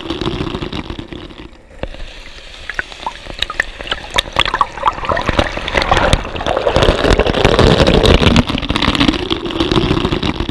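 Waterfall water churning and bubbling around a camera held in the plunge pool: an irregular rush with many small bubble pops and gurgles, quieter about two seconds in and loudest in the second half.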